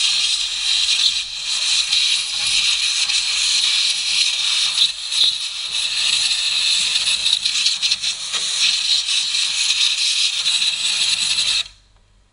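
Compressed-air blow gun blowing down the top of the engine: one loud, steady hiss of air that cuts off sharply near the end.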